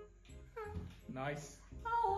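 A woman's high, wavering, whine-like cries, falling in pitch, then another rising near the end: her strained reaction as she gets something down her throat. Faint background music runs underneath.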